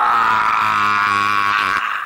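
A man's long dying scream held on one nearly steady pitch, breaking off a little before the end.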